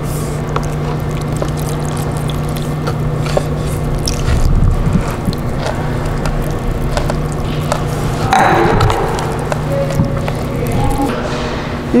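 Water being poured from a cup into cornstarch in a plastic tub and mixed in by hand, under a steady low hum.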